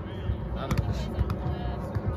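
Volleyball rally on grass: a few sharp slaps of hands and forearms striking the ball, over a low rumble of wind on the microphone.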